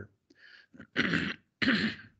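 A man clearing his throat: two short rasping clears in the second half, about half a second apart.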